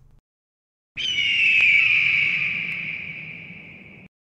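A hawk screech sound effect: one long, falling cry that starts about a second in and fades out over about three seconds.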